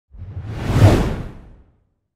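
An edited whoosh transition effect with a low rumble beneath it, swelling to a peak just under a second in and then fading away.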